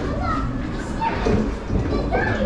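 Children talking and calling out in high voices, over a low steady rumble.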